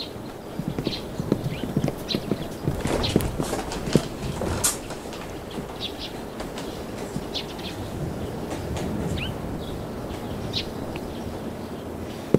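Footsteps knocking on wooden boards, irregular and uneven, with the louder, closer knocks in the first few seconds and fainter ones after.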